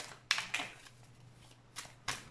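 A deck of oracle cards being shuffled by hand: a few short, crisp card snaps and slides, with a cluster just after the start and one more near the end.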